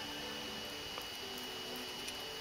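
Quiet room tone: a steady hiss with a thin, faint high whine and no distinct handling sounds.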